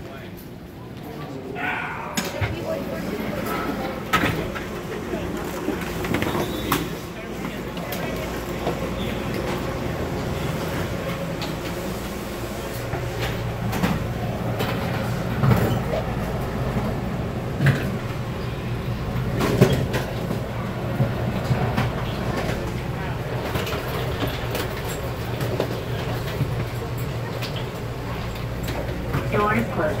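Interior sound of the ATL SkyTrain, a rubber-tyred automated people mover, getting under way and running along its elevated guideway. It is quieter for the first couple of seconds, then a steady low hum builds and holds, broken by occasional short knocks.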